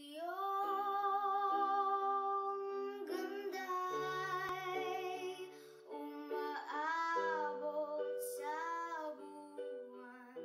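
A young girl singing a wordless, held melody with wavering pitch and sliding notes, over sustained chords played on an electronic keyboard.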